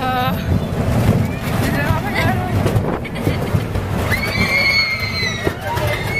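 A person's high, wavering voice with a long held high note about four seconds in, over a steady low rumble.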